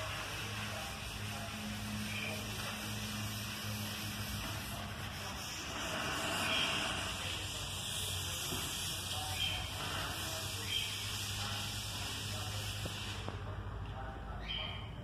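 Sandpaper on a hand sanding block scratching over a bare iron gate, a steady hiss with a low hum underneath. The scratching stops suddenly about a second before the end.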